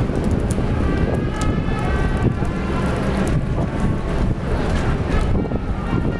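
Wind buffeting the camera microphone: a steady low rumble that keeps fluctuating, with faint street noise under it.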